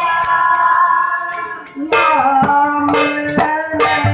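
Bengali devotional song: held melody notes over regular jingling percussion strikes, with drum strokes and a lower melody line coming in about halfway through.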